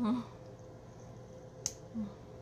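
A single sharp click a little before the end as the wand of a Benefit Roller Lash mascara sample is pulled free of its tube, over a faint steady hum.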